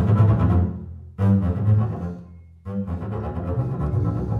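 Double bass played with the bow: three strong bowed attacks, each fading away, the second about a second in and the third just before three seconds, after a brief drop in sound. The last one leads into steady bowing.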